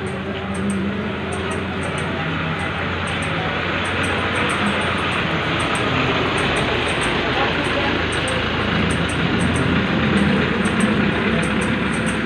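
Busy street ambience: many people talking at once and vehicle traffic, a steady, dense wash of noise.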